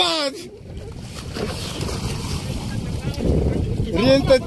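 Shallow seawater sloshing and splashing with wind buffeting the microphone, a rough rumbling noise that grows louder after the first second.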